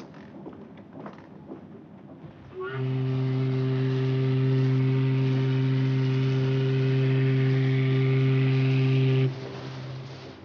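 Ship's steam whistle: one long, steady, low blast with a hiss of steam over it, starting about three seconds in and cutting off sharply near the end.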